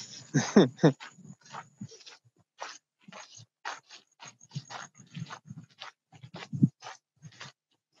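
Footsteps crunching on a sandy garden path, short uneven steps a few times a second, picked up by a hand-held phone while walking.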